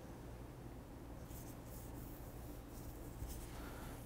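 Faint, scratchy rustling of plastic-gloved fingers and a syringe tip moving through hair on the scalp, over a low, steady room hum.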